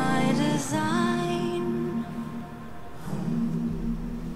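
An a cappella vocal group singing: a melodic line over stacked voice harmonies, thinning about halfway through to held low chord notes.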